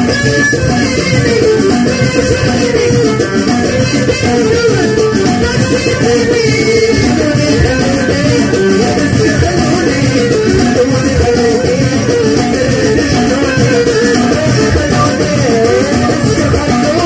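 Moroccan chaabi music played live by a band, loud and continuous, with a busy driving beat under a wavering melody line. A woman sings into a microphone.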